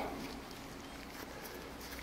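Quiet pause: faint steady room noise with a low hum, and no distinct tool clicks or scrapes.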